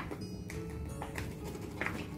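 Soft background music, with a few light taps and rustles as a paper bag of flour is handled and tipped over play dough.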